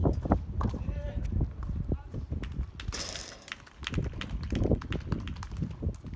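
Tennis balls knocking on rackets and the hard court at an irregular pace, with footsteps and faint voices. A brief hiss comes about three seconds in.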